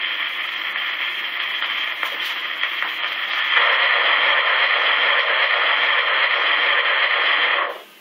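Sonora acoustic phonograph with its needle running on in the groove of a shellac 78 after the last note: steady hiss and crackle of record surface noise through the horn, louder about three and a half seconds in. It cuts off suddenly near the end as the reproducer is lifted from the record.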